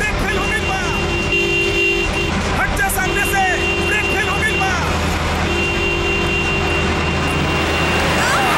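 A truck's horn sounding in three long blasts of about two seconds each over the steady rumble of its engine, with a man shouting between and over the blasts.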